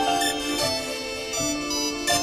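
Hip hop instrumental beat playing on without vocals: a melody of held notes stepping from pitch to pitch over a steady lower sustained tone.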